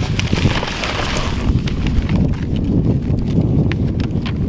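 Sheets of printer paper rustling and shuffling as they are handled and leafed through, the rustle strongest in the first second or so, over a low, gusty rumble of wind on the microphone.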